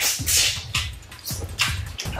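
Eating sounds: a run of short, sharp mouth noises, chewing and lip smacks, as a person eats food pushed into the mouth by hand.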